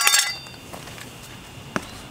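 Metal hand tools clinking together as they are picked up: one bright, ringing clink right at the start that dies away within about half a second, then a couple of faint taps.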